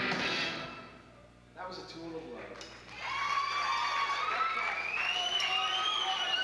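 Live rock band with electric guitars and drums, its music dropping away about half a second in. After a quieter gap, a loud sustained pitched sound with slowly sliding, wavering tones starts about three seconds in.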